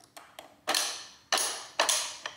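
Weight-selector dial of a BWSS (Big Workout Small Space) adjustable dumbbell turned by hand, clicking into place at each weight setting: a few sharp clicks roughly half a second apart, each with a brief ringing tail. Each click signals that the dial has seated exactly on a weight.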